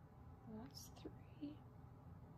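Near silence, with a woman's voice murmuring a word or two very softly, almost a whisper, about half a second in.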